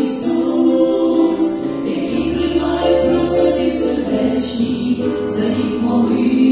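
A women's vocal group singing a Christian worship song in harmony through microphones, with sustained notes and piano accompaniment.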